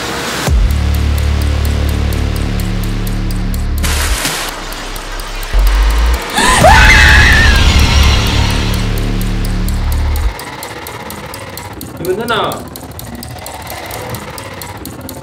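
Horror-trailer soundtrack: a deep rumbling drone with a fast flutter on top, a whoosh about four seconds in, then a shriek over a second deep drone that cuts off suddenly about ten seconds in. A short voice sound follows near the end.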